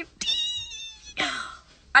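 A woman's high-pitched excited squeal, held for just under a second and falling slightly in pitch, followed by a short breathy exhale.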